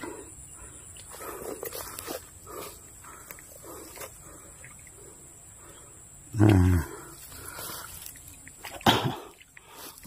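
Quiet background with one short, low voiced sound lasting about half a second, six and a half seconds in, and a sharp click just before the end.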